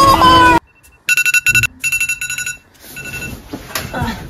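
Phone alarm going off: a high electronic beeping tone in quick repeated bursts, starting about a second in.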